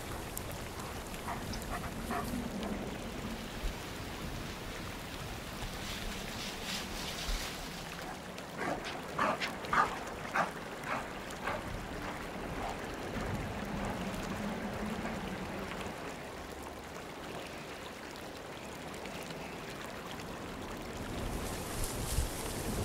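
Gray wolves giving short yips and whines, a few early on and a louder cluster of quick calls around nine to eleven seconds in, over a faint steady outdoor background.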